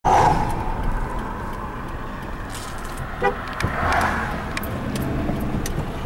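Ford F-150 pickup heard from inside the cab while driving: steady low engine and road rumble. A short loud tone sounds right at the start.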